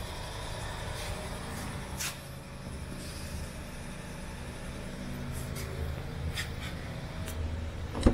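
A steady low hum with a few faint, short ticks scattered through it.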